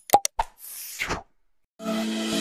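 Sound effects of an animated subscribe-button end screen: two quick clicking pops, then a swish lasting about half a second that falls in pitch. Music with a steady beat starts near the end.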